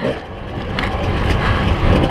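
Kawasaki KDX 220 two-stroke dirt bike being ridden over rough, rocky trail, heard from the rider's helmet. The engine and chassis make a continuous noise, with a couple of brief knocks near the middle.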